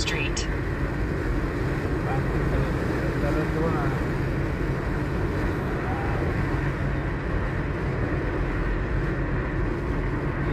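Steady road and engine rumble of a car driving, heard from inside the cabin.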